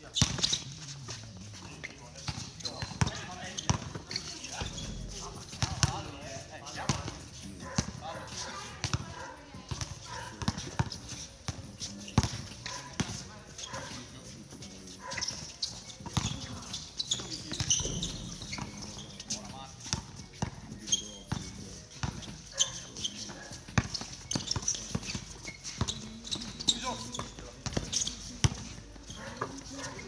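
Basketball bouncing on a hard outdoor court during play, with irregular thuds throughout and players' voices calling out.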